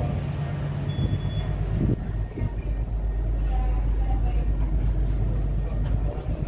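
Steady low rumble on the deck of a passenger ship under way, growing louder about two seconds in.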